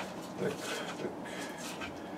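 Soft knocks and clinks of pots and utensils being handled at a kitchen counter, with a brief mumbled phrase.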